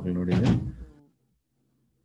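A person's voice speaking, ending with a short burst of noise about half a second in, then dropping to silence for the second half.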